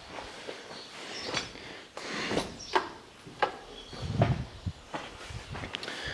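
Footsteps on a dirt floor: several separate steps and scuffs at an uneven pace.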